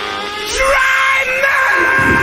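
Rock song with a loud, strained, screamed vocal note that leaps up in pitch about half a second in and is then held.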